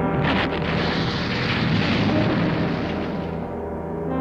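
Animated sci-fi energy-blast sound effect: a loud rushing, rumbling noise that starts sharply about a quarter second in and fades out near the end, over sustained music chords.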